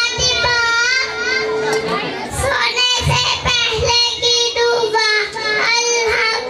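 Young children's voices over microphones, reciting Islamic prayers (duas and kalimas) in a sing-song chant, with a steady tone held underneath.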